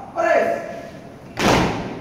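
A shouted foot-drill word of command, then a single sharp stamp about a second and a half in as the platoon turns and brings its boots down together, with a short echo after it.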